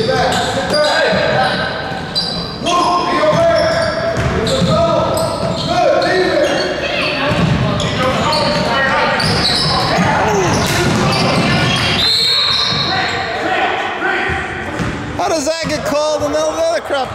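Basketball game in a gym: a ball bouncing on the hardwood court amid players' and spectators' shouts, echoing in the large hall.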